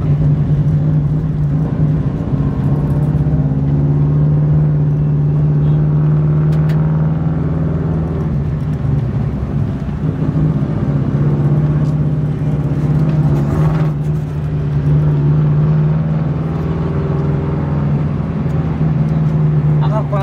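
Rally car's engine running steadily, heard from inside its stripped cabin as a loud, even drone while it moves slowly in traffic.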